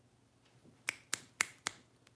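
Four finger snaps in quick succession, about four a second.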